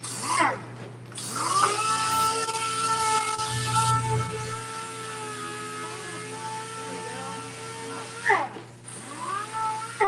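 Air-powered dual-action sander with a Scotch-Brite-type abrasive pad scuffing a motorcycle body panel as prep for primer: a steady whine with air hiss. It spins up about a second in, winds down about eight seconds in, and starts again briefly near the end.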